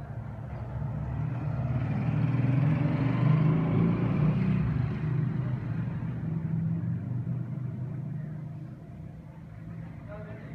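A road vehicle's engine passing by, a low rumble that swells to a peak about three seconds in and then fades away.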